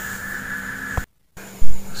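A steady background hum, broken about a second in by a sharp click and a short gap of total silence where the recording cuts. Then comes a loud, dull thump from the phone being handled.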